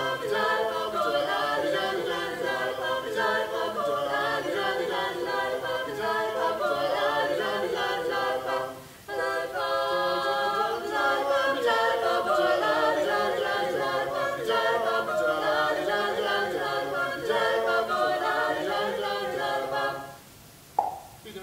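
A cappella singing by a mixed quartet of one man and three women, voices in harmony with no instruments. The singing breaks off briefly about nine seconds in, then runs on until the song finishes at the very end.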